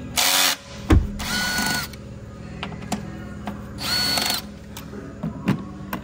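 A small electric power tool runs in short bursts, twice for about half a second, each time spinning up quickly to a steady whine. A loud noisy burst right at the start and a sharp knock about a second in come before them.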